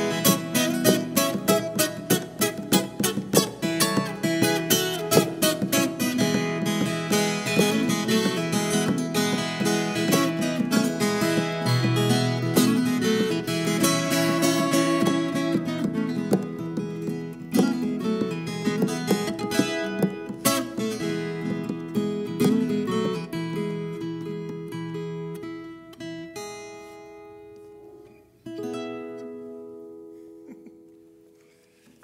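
Ten-string viola caipira strummed and picked in a fast instrumental duo with a violin, the playing thinning out in the last seconds and closing on a final chord, struck shortly before the end, that rings out.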